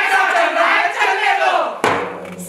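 A group of young voices crying out together in one long shout that falls in pitch near the end, followed by a single drum beat.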